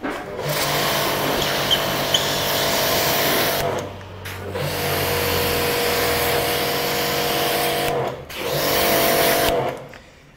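Portable electric pressure washer running with the hiss of its water jet, its motor starting and stopping three times in spells of a few seconds each.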